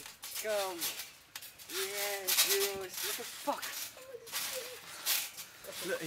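Young men's voices calling out in short, drawn-out calls, with scattered clicks and rattles between them.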